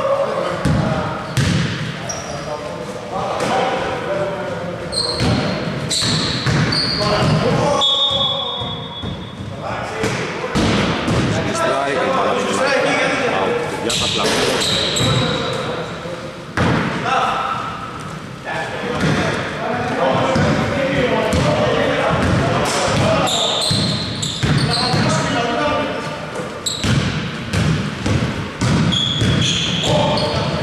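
A basketball bouncing on a hardwood gym floor during play, a series of short knocks, with players calling out on court. It all rings in a reverberant sports hall.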